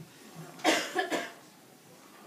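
A person coughing: three short coughs about half a second to a second in, the first the loudest, in a quiet, reverberant room.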